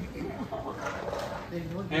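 A pause in a man's amplified toast, filled with faint background voices; his voice over the microphone comes back near the end.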